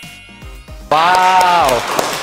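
Background music with a light steady beat, then about a second in a long drawn-out "wow" in one voice, with its pitch dropping at the end, over a wash of crowd-like noise: an edited-in reaction sound effect.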